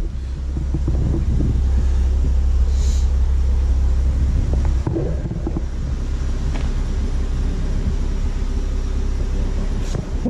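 Mazda MX-5 Mk3's four-cylinder engine idling with a low, steady rumble that eases slightly about five seconds in.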